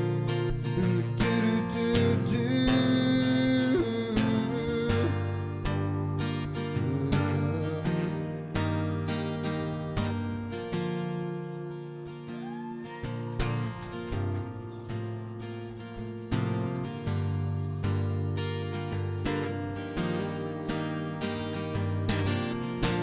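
Acoustic guitar strummed in a steady rhythm, chords changing as it goes: an instrumental passage between sung lines.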